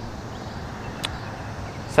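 Steady hum of distant road traffic, with a single sharp click about a second in.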